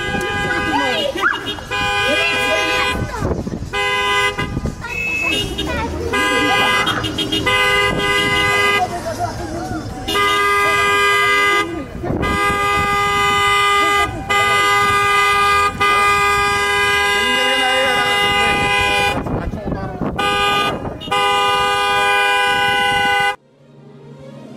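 Several car horns sounding together in long blasts, broken by short gaps, with people's voices in between. This is celebratory honking, as a wedding car convoy gives when it arrives.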